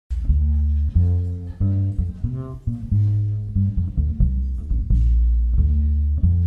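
Acoustic double bass played pizzicato: a line of low plucked notes, one after another, with no drums behind it.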